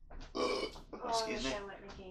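A person's vocal sound with no clear words, pitched and wavering, lasting about a second and a half.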